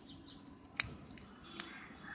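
A few small, sharp clicks of hard plastic as the cracked plastic case of a pen drive is handled and pulled apart by hand. The loudest click comes a little under a second in.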